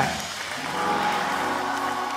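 Soft sustained keyboard chords held under a congregation's applause.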